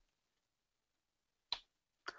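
Near silence in a pause of speech, broken by a single short click about three quarters of the way through.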